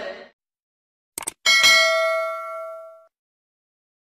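Singing cuts off just after the start; after a moment of dead silence come two quick clicks and then a single bright bell-like ding that rings for about a second and a half as it fades away.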